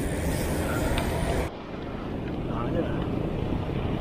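Wind buffeting the microphone of a camera on a moving bicycle, with a steady low rumble of road and traffic noise. A high hiss cuts off suddenly about a second and a half in, leaving the lower rumble.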